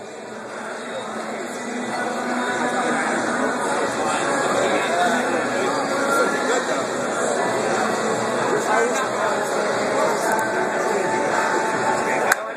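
Crowd of spectators in a large gym talking over one another, a dense babble of chatter that swells over the first two seconds and then holds steady.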